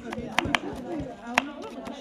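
Kitchen knife chopping black cabbage (collard) leaves on a wooden cutting board: a few sharp, irregular chops, the loudest about a second and a half in, over quiet voices in the background.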